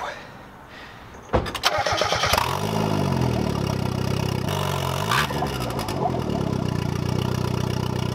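Mazda Miata's four-cylinder engine cranking briefly and catching about two seconds in, then running at idle with two short rises and falls in revs.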